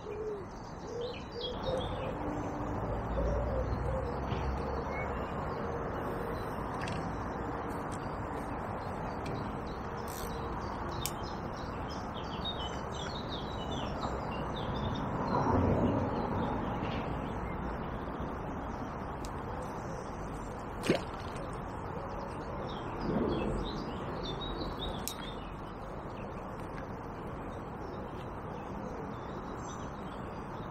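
Wild birds chirping and singing over a steady outdoor background noise, with a low cooing in the first part. A louder rustling swell comes in the middle and a single sharp click about two-thirds of the way through.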